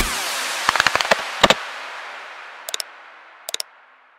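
Outro animation sound effects: a music track cuts off and its echo slowly fades, with a few short pops over it. There is a quick cluster about a second in, then pairs of pops near the middle and near the end.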